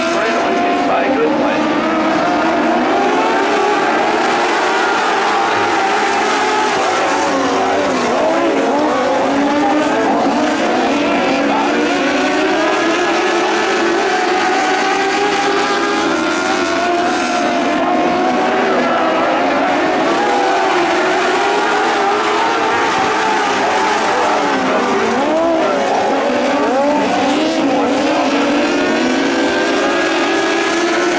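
A pack of motorcycle-engined dwarf race cars running laps on a dirt oval. Several engines are heard at once, their pitches rising and falling as the cars accelerate and lift through the turns.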